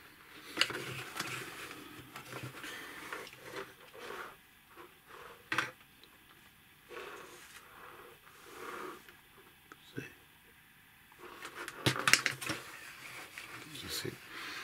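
Plastic parts and tubing of a hydraulic robot arm kit being handled and fitted by hand: scattered clicks and rustles, with a cluster of sharp clicks about twelve seconds in.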